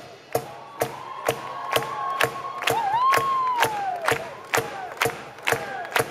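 Live rock band in a breakdown: a steady beat of sharp hits about two a second, under crowd noise. A voice holds a long note from about a second in, then slides up and back down.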